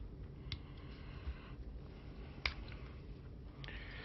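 A few faint, sharp clicks from a small slide power switch on a hand-soldered hobby amplifier circuit board being thumbed to off, the clearest about half a second and two and a half seconds in, over a low steady hiss.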